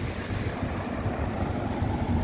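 Road traffic: a car driving past close by, over a low rumble of wind on the microphone.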